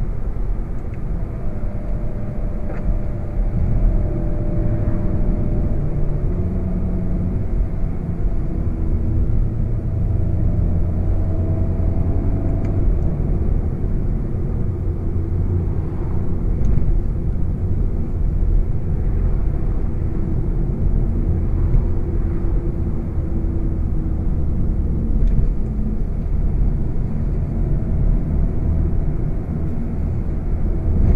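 2016 VW Golf VII GTI Performance's 2.0-litre turbocharged four-cylinder running at light, steady cruise, mixed with road and tyre rumble. The engine note shifts slightly in pitch as the car eases off and picks up speed.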